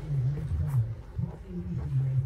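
A low, indistinct voice murmuring without clear words.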